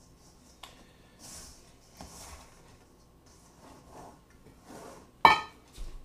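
Hands tossing raw chicken pieces in flour in a stainless steel mixing bowl, soft scattered rustling. A little after five seconds in, one loud ringing metallic clang as the steel bowl is knocked or set down.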